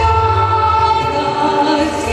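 A large children's choir singing, holding one long chord.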